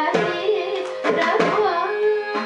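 Female Carnatic vocalist singing in raga Bhairavi with wavering, ornamented pitch glides, over a steady tanpura drone and crisp mridangam strokes.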